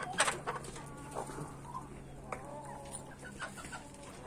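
A backyard flock of chickens clucking quietly, with short scattered calls and a few sharp clicks.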